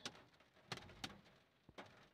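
Near silence, broken by a few faint, short clicks or taps.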